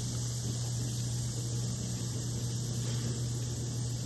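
Citric acid and baking soda solution fizzing under a thick head of foam: a steady soft hiss over a steady low hum.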